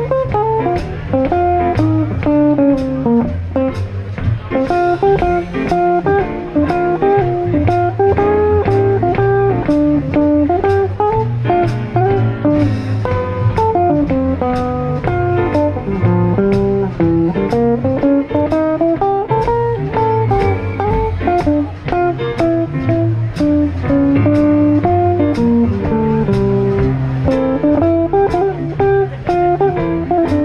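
Live jazz combo: a Gibson L-4 archtop electric guitar picks melodic single-note lines over plucked upright double bass and drums. The drums keep time with light cymbal ticks, about two a second.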